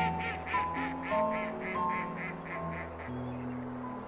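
A duck quacking in a quick run of about a dozen calls, about four a second, which stops about three seconds in. Soft background music with held notes plays underneath.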